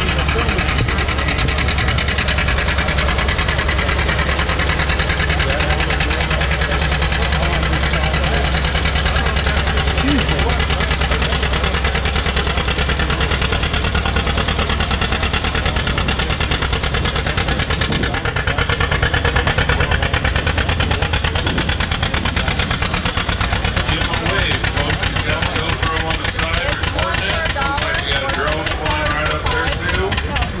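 John Deere 820 tractor's engine running hard through a pull, a steady low firing beat throughout, with voices in the background.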